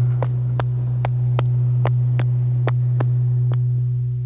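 Synthesizer film score: a low note held steady under a regular ticking pulse, about three to four clicks a second.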